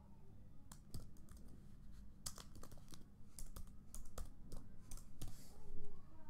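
Typing on a computer keyboard: a dozen or so irregular keystrokes, with a louder noisy burst near the end.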